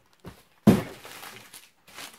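A plastic-wrapped bundle of steelbook cases is pulled out of a cardboard box packed with shredded paper. There is a short rustle near the start, then a sudden thump and crinkle of plastic that fades over about a second.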